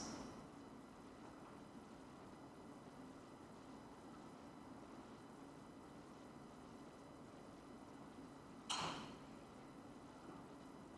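Near silence: faint steady room tone, with one short audible breath near the end.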